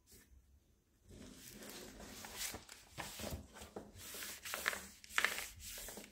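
Paper rustling and crackling as a thin crossword magazine is folded back on itself. It starts about a second in and goes on as a string of crinkles, the sharpest near the end.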